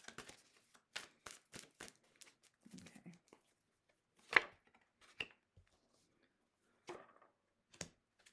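Tarot cards being shuffled and drawn by hand: irregular light snaps and taps of card stock, with one sharper snap about halfway through.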